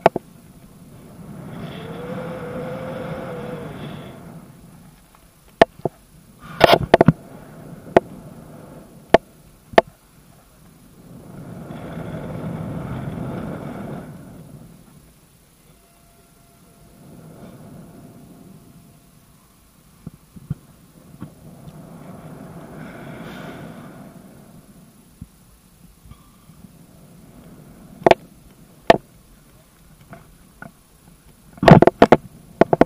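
Wind rushing over the jumper's body-worn camera microphone in slow swells that rise and fade every few seconds as he swings back and forth on the rope after a rope jump. Sharp clicks and knocks, likely from the rope and gear, come a few times in the middle and near the end.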